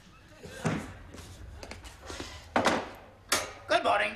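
A door banging open, with a few sharp knocks and thuds, the two loudest a little under a second apart late on.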